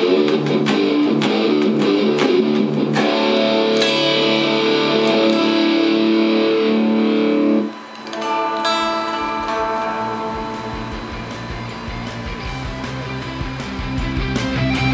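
Vantage electric guitar in drop D, played through AmpliTube amp simulation: dense distorted chords on a distortion preset, then about seven and a half seconds in the sound dips briefly as the preset is switched from a MIDI foot controller to a clean tube-amp tone with delay, its notes ringing and fading away.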